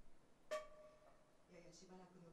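A single sharp pitched note about half a second in, with a sudden attack that rings briefly and dies away. A woman's voice, reading aloud, resumes quietly near the end.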